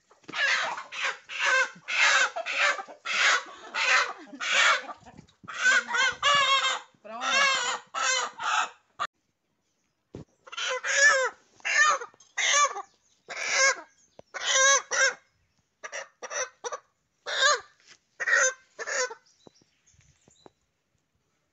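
Chicken squawking loudly in a long run of short, harsh calls, with a brief pause just before the middle: the distress squawks of a hen being caught and held down.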